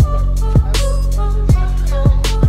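Background music with a beat: deep kick drums that drop in pitch, about every half second to second, over a sustained bass and crisp high percussion.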